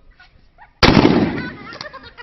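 A single rifle shot about a second in, sudden and loud, its sound fading away over the next second.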